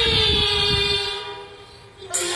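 A woman's voice holding one long Teochew opera note, sagging slightly in pitch, over the accompaniment. It fades out through the second half.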